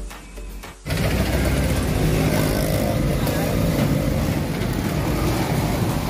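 Background music cuts off about a second in. Loud, steady roadside street noise follows: vehicle traffic with people's voices mixed in.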